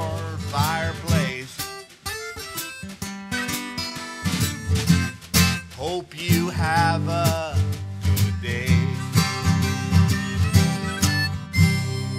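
Live acoustic folk playing: a strummed acoustic guitar with a harmonica playing wavering, bent notes over it. Near the end the song stops on a final chord that rings out and fades.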